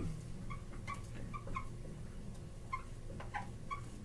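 Dry-erase marker squeaking on a whiteboard as it writes, in short, scattered chirps over a faint low hum.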